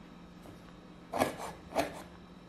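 Chef's knife slicing through garlic cloves onto a wooden cutting board: two strokes about half a second apart in the second half, each a short scrape ending on the board.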